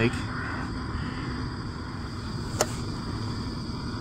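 Steady hiss of a canister camping gas stove burning under a pot of water, with a single sharp click about two and a half seconds in.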